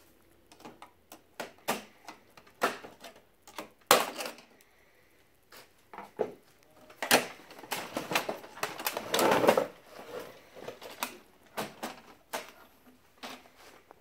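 Plastic side cover of an HP Color LaserJet Pro printer being pried loose and unclipped with a screwdriver and fingers. It makes a scattered series of sharp clicks and snaps, with a longer, louder stretch of scraping and rattling from about seven to ten seconds in, as the panel works free.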